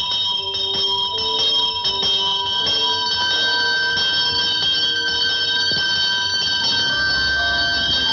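Bells ringing all at once in a loud, continuous clangour that starts suddenly. An orchestral score moves underneath.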